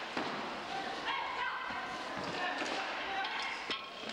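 Floor hockey play in a gym: players' voices and shouts mixed with sharp clacks of sticks and ball on the hard floor, several separate knocks through the few seconds.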